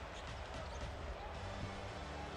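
Quiet arena ambience with a basketball being dribbled on the hardwood court.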